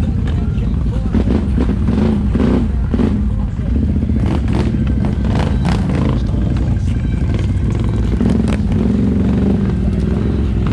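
ATV engine heard from on board, running steadily at low trail speed with small rises and falls in pitch. Scattered knocks and clatter come from the machine jolting over rough ground.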